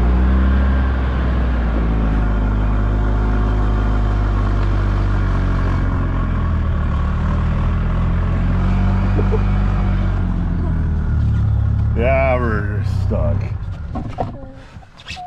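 Gas golf cart engine running steadily under load as the cart ploughs through snow, its pitch rising and falling a little. Near the end a person's voice gives a brief wavering cry, and the engine sound drops away.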